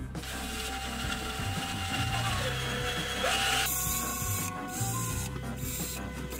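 Handheld power drill spinning a drill-press spindle part against an abrasive pad, with a scrubbing hiss. The motor's pitch drops under load about two and a half seconds in and rises again just after three seconds.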